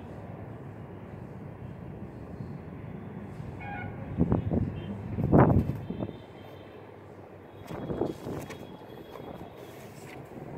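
Wind buffeting the microphone: a steady low rumble that swells into strong gusts about four to six seconds in, and again briefly around eight seconds.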